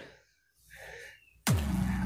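A sudden loud hit about one and a half seconds in, after a near-silent stretch, ringing on with a low tone.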